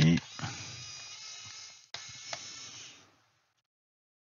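Electric screwdriver motor whining steadily in two runs of about a second and a half each, with a brief break between them, as it backs a screw out of a laptop's plastic base.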